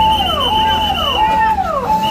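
Ambulance's electronic siren sounding a repeating cycle, a held note that drops in pitch, about every 0.6 seconds. A higher steady tone sounds over it for the first second or so.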